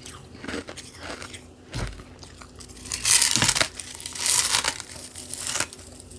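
Close-up crunching of refrozen carbonated ice pillow: a few small crackles, then three loud, crisp crunches in the second half.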